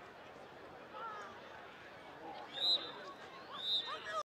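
Distant shouting of players on a football pitch, then two short blasts of a referee's whistle, one about two and a half seconds in and one near the end.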